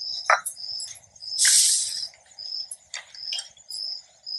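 Short, high chirps from a small animal repeat a couple of times a second throughout. About a second and a half in comes a brief, loud burst of rustling noise, the loudest sound here, from handling at the kitchen counter. A small click sounds just after the start.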